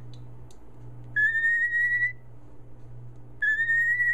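Cockatiel whistling two clear notes, each about a second long and rising slightly in pitch, about two seconds apart. The two notes are a counted answer to a counting question.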